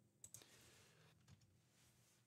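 Near silence, with two faint computer mouse clicks in quick succession about a quarter second in.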